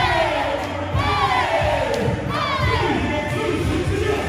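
Loud whooping shouts from a group, each falling in pitch and repeating about every second and a half, over hip hop workout music with a pulsing bass beat.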